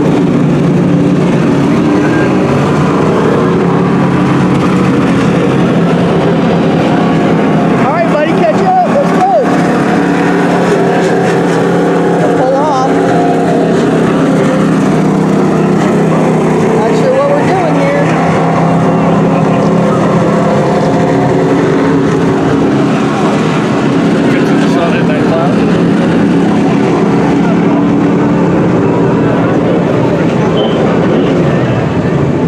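Dirt-track racing trucks' engines running loudly and steadily, with the pitch rising and falling here and there as they accelerate and back off.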